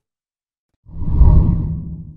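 A deep whoosh transition sound effect: after a moment of silence it swells quickly and then fades away. It marks the cut to an animated outro graphic.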